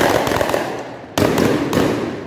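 Aerial fireworks bursting overhead: loud bangs that echo and die away, with a fresh bang about halfway through and another soon after.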